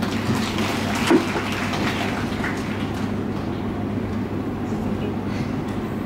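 Audience applauding, densest for the first two seconds or so and then dying away, over a low steady hum.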